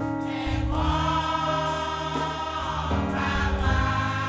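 Women's church choir singing a gospel hymn in held, sustained chords, the sound swelling about a second in, over a steady low instrumental accompaniment.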